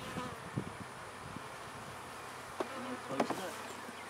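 Honeybees buzzing steadily around an opened hive. Near the end there are a couple of sharp knocks as the hive's cover is set in place and worked with a hive tool.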